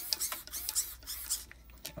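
Cheap 30 kg RC steering servo swinging the crawler's front wheels back and forth, a string of short high-pitched whirring bursts several times in quick succession, then a couple of clicks near the end.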